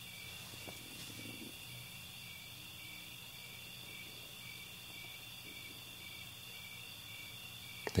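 Faint insects chirping: a steady high trill with a regular pulse about twice a second, over a low steady hum.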